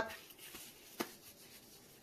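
Faint rustle of gloved hands being wiped with a baby wipe, with a single light click about a second in.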